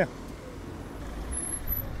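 Low rumble of a road vehicle, with no clear engine note, growing slightly louder over the two seconds.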